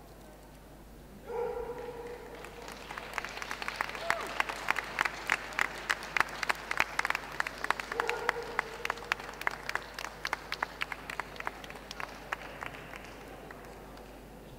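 Audience clapping and cheering for a dog in the show ring. A couple of held cheering calls come about a second in, the clapping builds from about two seconds in, then thins out near the end.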